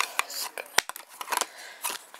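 Clear acrylic magnetic card holder being handled while a card is fitted inside: a handful of sharp hard-plastic clicks and taps, the loudest about three-quarters of a second in.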